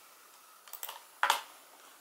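Laptop keys being tapped: a few light clicks a little before the one-second mark, then a louder cluster of clicks just after it.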